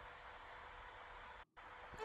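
Near silence: faint steady room hiss, with a brief drop to total silence about one and a half seconds in.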